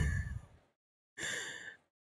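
A short audible breath from a person at the microphone, lasting about half a second a little past the middle, set in dead silence after the fading end of a spoken word.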